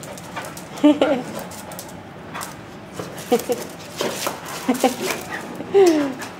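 Dogs whining and yipping in short calls a second or so apart, some sliding down in pitch, excited and wanting to play.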